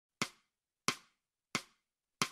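Three sharp clicks, evenly spaced about two-thirds of a second apart in a steady beat, counting in the intro music. The silence between them is dead.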